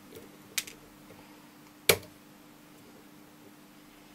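Flush side cutters snapping through the blue plastic case of a polyester film capacitor: a small click about half a second in, then one sharp crack just before two seconds as the case gives way.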